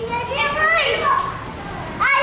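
Children's high-pitched voices chattering and calling out as they play, louder in the first second and then quieter.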